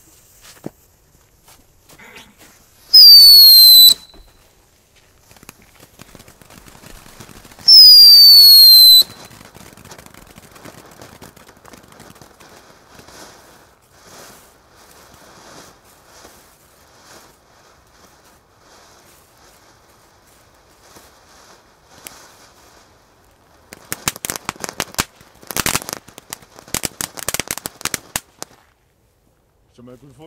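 Weco Junior Chico ground firework burning: two loud whistles, each falling slightly in pitch, about three and eight seconds in, then a long hissing spray of sparks, and a burst of rapid crackling near the end.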